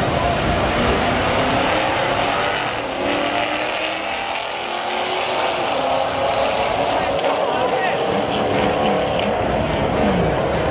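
A big-block Chevy V8 pickup and a Camaro launching side by side off a drag-strip start line and accelerating away hard, their engines running at full throttle and changing pitch as they pull away.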